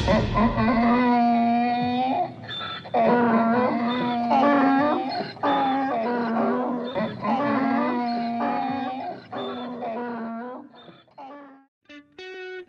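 Donkey braying: a long run of loud hee-haws, each rasping call see-sawing between a high in-breath and a lower out-breath, growing weaker and dying away near the end.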